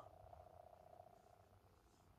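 Near silence in a car cabin: a faint low hum, with a faint steady tone that fades out about a second in.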